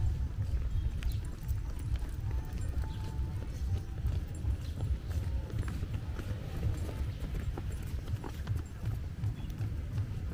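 Footsteps of a person walking along a rubberised jogging path in a steady walking rhythm, over a continuous low rumble.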